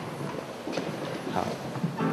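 Footsteps of hard-soled shoes on a hard floor, a few uneven knocks, with faint voices under them.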